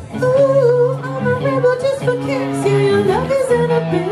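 Live rock band: a female lead singer holds long, wavering notes over a sparse sustained accompaniment with no deep bass.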